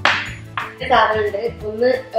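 A single sharp glass clink right at the start, dying away within about half a second, followed by a voice over background music.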